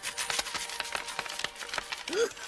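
Coins pouring out and clattering, a rapid run of small metallic clinks, as the piggy-bank "safe" is emptied.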